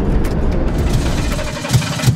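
Citroën-based motorhome driving on the road, heard from inside the cab: a steady engine hum with road noise. Two low thumps come near the end.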